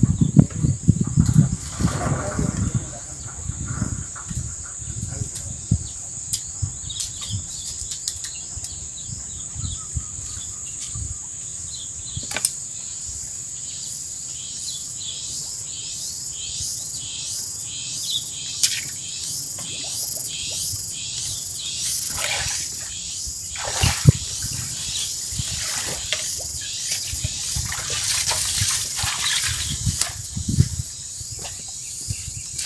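Rural outdoor ambience: a steady high-pitched insect drone with a regular chirping pulse of about two chirps a second. A few sharp knocks sound over it, and wind rumbles on the microphone for the first few seconds.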